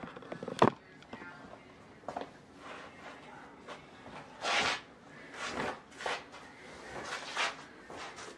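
Bedding being handled as a bed is made: a comforter and sheets swish and rustle in several short bursts, with a sharp knock about half a second in that is the loudest sound.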